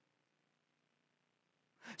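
Near silence: room tone, broken near the end by the start of speech.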